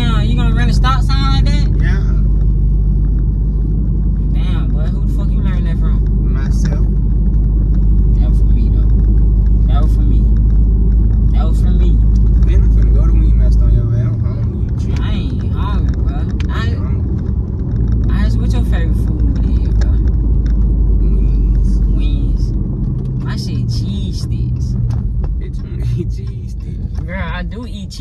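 Steady low rumble of a moving car heard inside its cabin, engine and road noise, with voices in the car at times. The rumble drops off suddenly about halfway through and comes back a few seconds later.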